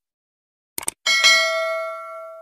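A short mouse click, then just after a second in a bright bell ding that rings on and slowly fades: the notification-bell sound effect of a subscribe-button animation.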